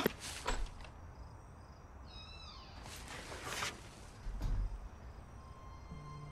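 A single short meow, like a cat's, pitched high and falling, about two seconds in. Short hissy bursts follow around the three-second mark, then a dull low thump.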